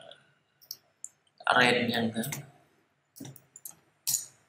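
A few scattered clicks from a computer mouse and keyboard, with a quick run of clicks near the end.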